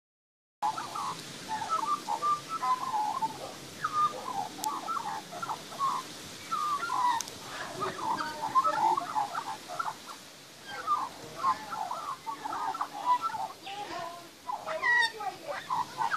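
Young Australian magpie singing: a continuous, varied warble of short rising and falling phrases that starts just after half a second in.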